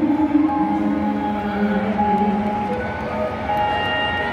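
A slow ballad performed live by a female singer with backing music, made up of long held notes. The voice drops out partway through and the accompaniment carries on.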